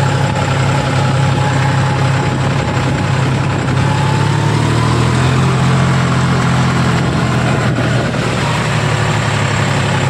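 A John Deere tractor's diesel engine running steadily as the tractor drives along a dirt track, heard up close from the seat. Its note lifts slightly about halfway through.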